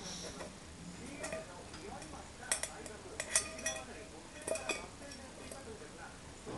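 A small stainless-steel container, held in a Pekingese puppy's mouth, clinking and knocking against a wooden floor: a few sharp metallic clinks with a short ring, in clusters about two and a half, three and a half and four and a half seconds in.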